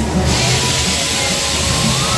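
A long hiss from the fairground ride's smoke jet, starting about a quarter second in, over loud ride music with a bass beat.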